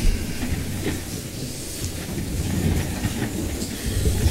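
People moving about and settling at a council dais: shuffling, rustling and chair handling with a low rumble and small knocks, picked up by the desk microphones. There is a sharper knock right at the start.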